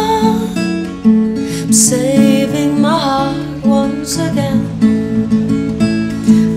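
Acoustic guitar playing a gentle folk accompaniment of plucked and strummed chords. A soft wordless vocal line is held near the start and again about two seconds in.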